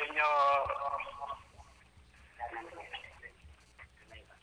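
Speech only: a voice finishing a Tagalog greeting ("...sa inyo"), then a few faint words and a low quiet stretch.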